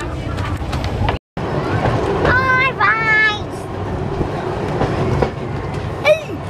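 Electric tram running along its rails, a steady low rumble of wheels and running gear heard from the open upper deck. Brief high voice calls come in about two seconds in.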